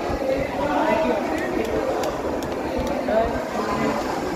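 Overlapping voices of players and spectators in a busy badminton hall, with a few sharp, light clicks of rackets striking shuttlecocks, some in quick succession.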